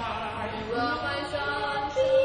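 Young voices singing a slow song, with long held notes.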